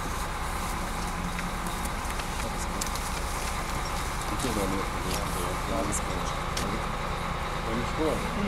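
Crane engine idling steadily in the background, with faint voices about halfway through and a few light clicks.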